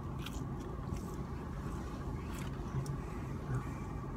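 A person chewing a mouthful of food, with faint, scattered wet mouth clicks, over a steady low hum inside a car.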